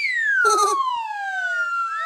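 Cartoon whistle sound effect: several layered whistle tones slide down in pitch over about a second and a half. A brief blip comes about half a second in, and a quick rising slide starts near the end.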